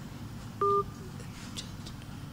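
A single short electronic beep of two tones sounding together, lasting about a quarter of a second, with a faint short echo just after it, over a low background hiss.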